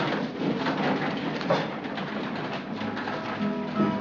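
Acoustic guitar starts playing about three seconds in, held plucked notes over a low bass note, after a stretch of irregular, unpitched stage noise.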